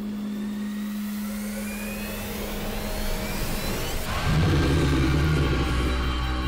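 Horror sound design: a low steady hum gives way to a rising whooshing swell, which breaks about four seconds in into a heavy low boom and a held rumbling drone.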